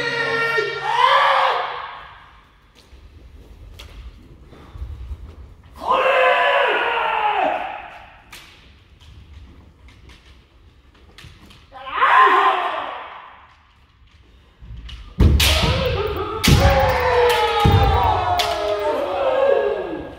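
Kendo practitioners' kiai, long drawn-out yells, come in several bursts, echoing in a large wooden hall. The loudest stretch is near the end. There, sharp impacts of bamboo shinai strikes and stamping footwork on the wooden floor come with the shouts.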